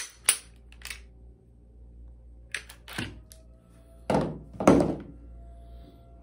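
Glock 19 pistol being field-stripped by hand: a run of sharp clicks and clacks of metal slide on polymer frame as the slide is worked and taken off. The two loudest, heavier knocks come about four and about five seconds in.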